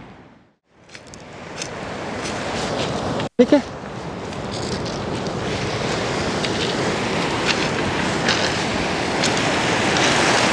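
Sea waves breaking and washing on a pebble beach, with wind on the microphone. The sound fades almost to nothing just after the start and cuts out for an instant about a third of the way in, then runs on steadily.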